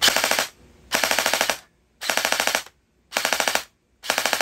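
Electric MP5-style gel blaster test-firing on full auto with a stiffer M90 spring in its metal-geared gearbox: four short bursts of about half a second each, roughly a second apart, each a rapid run of shots as the gearbox cycles.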